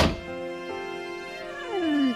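A single thump right at the start, then slow music with held notes, over which a cartoon puppy gives a falling whimper near the end.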